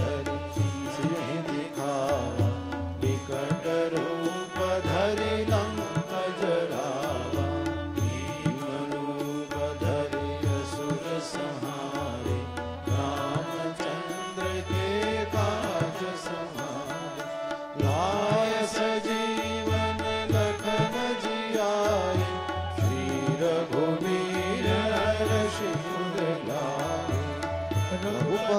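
Hindu devotional chanting set to music: a voice sings a drawn-out, gliding melody over instrumental accompaniment, with a low beat recurring about every two seconds.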